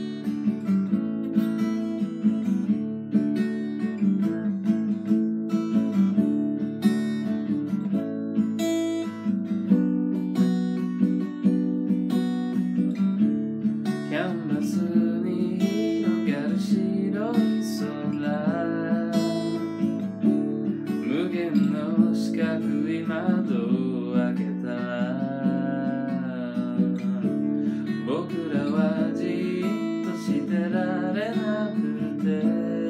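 Steel-string acoustic guitar strummed in chords as a song's intro. From about halfway in, a man's voice sings over it.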